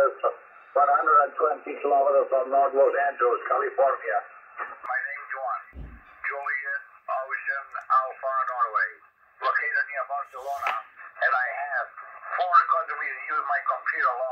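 A distant amateur radio operator's voice received on lower sideband at 7.157 MHz and played through an HF transceiver's speaker, thin and narrow-sounding, with short gaps between phrases. First it comes from a Yaesu FT-710, then from a Xiegu X6100, with a brief low knock about six seconds in as the receivers are changed over.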